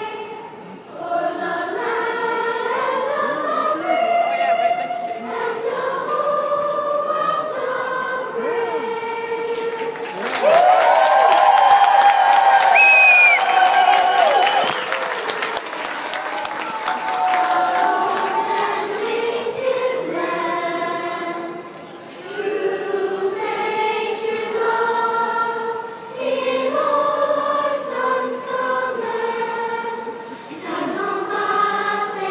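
School choir singing a national anthem unaccompanied, heard from the stands of a large stadium. For about four seconds near the middle a much louder voice close to the microphone sings over it.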